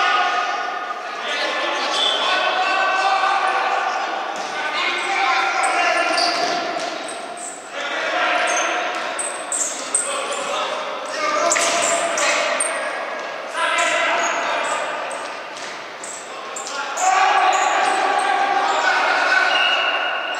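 Futsal ball being kicked and bouncing on a wooden sports-hall floor during play, with players shouting to each other, all echoing in the large hall.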